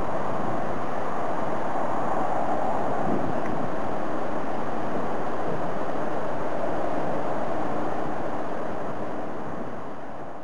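Steady rushing outdoor background noise with no bird call in it, fading out over the last couple of seconds.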